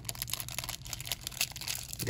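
Small clear plastic hardware bag of plastic wall anchors crinkling and rustling as it is handled, with irregular crackles.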